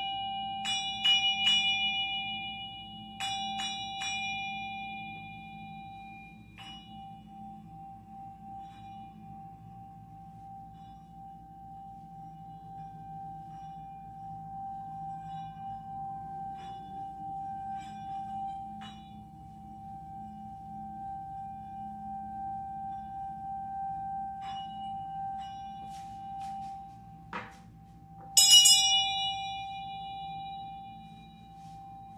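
A struck ritual bell sounding the close of a rite: it is struck in quick groups of strokes in the first few seconds, then its single low tone rings on and slowly dies away. Near the end it is struck again, loudly, and rings out.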